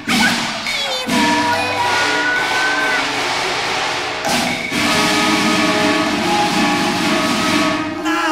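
Cantonese opera ensemble music: sustained melody instruments over loud, dense percussion, with brief breaks about one second in and about four seconds in.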